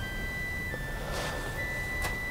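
Soft background film score: sustained high synthesizer notes that step to a new pitch every second or so over a faint low drone.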